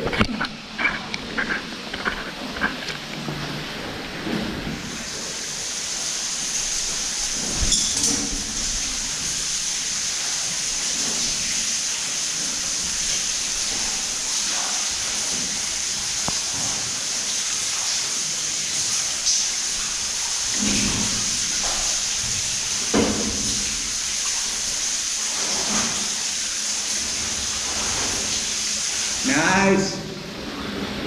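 A steady high-pitched hiss starts abruptly about five seconds in and cuts off just before the end, with faint distant voices now and then.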